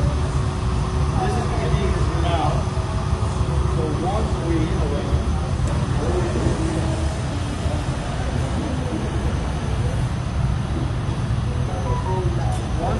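Steady low rumble of a glassblowing studio's furnaces and fans running, with faint voices over it.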